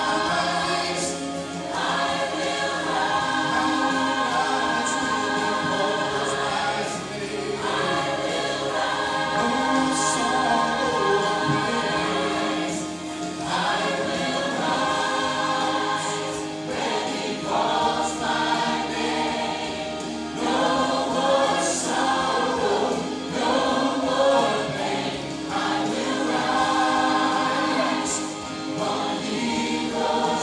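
Church choir singing a gospel song, in sung phrases separated by short breaks.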